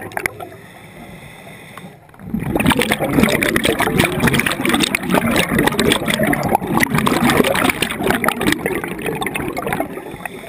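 Underwater breathing through a scuba regulator. A quieter couple of seconds is followed, from about two seconds in, by a long run of exhaled bubbles gurgling and crackling.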